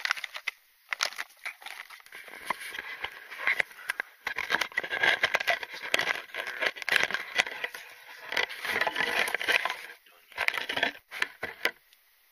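Close crackling and rustling of dry twigs and brush with clicks and knocks from the camera being handled and set in place, coming in irregular bursts. It cuts off just before the end.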